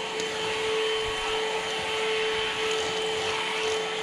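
PerySmith Kaden Pro K2 cordless stick vacuum running steadily on its motorised floor head, a constant whine over a rush of air.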